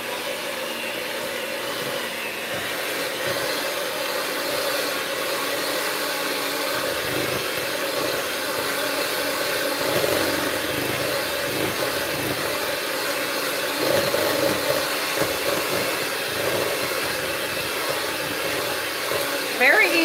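Electric hand mixer running steadily, its beaters whipping cream cheese in a stainless steel bowl.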